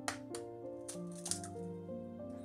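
Background music with a handful of sharp clicks over it: an egg being tapped against the rim of a ceramic mug and its shell cracked open.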